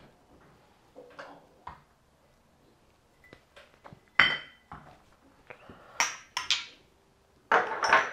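Glass vodka bottles and small shot glasses being picked up and set down, giving a series of separate clinks and knocks. The loudest clink, about four seconds in, rings briefly.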